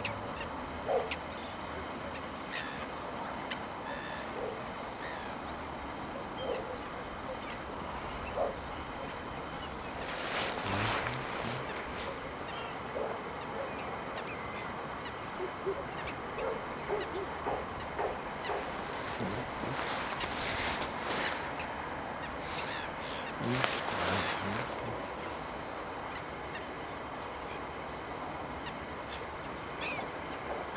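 Scattered short calls from wetland birds over a steady background hiss, with a few louder rushes of noise about a third of the way in and again around two-thirds.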